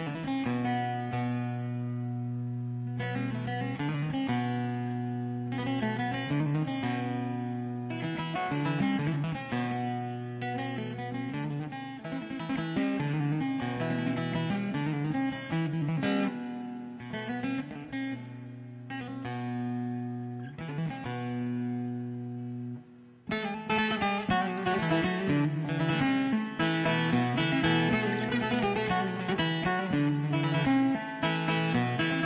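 Bağlama (Turkish long-necked lute) played instrumentally: a plucked melody over steady open-string drones. After a short break about 23 seconds in, the playing comes back louder and fuller, with dense strumming.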